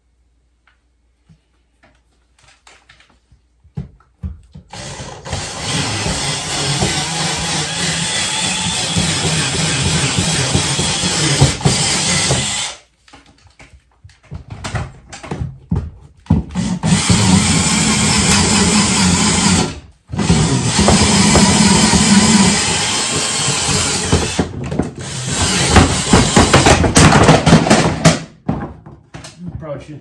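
Cordless drill running under load in three long runs of about eight, three and eight seconds, with short stops and a few brief spurts between them.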